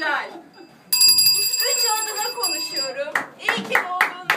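Hand clapping, a quick run of claps starting about three seconds in, with laughter and voices. Before that, a bell-like ringing with several steady high tones sets in suddenly about a second in.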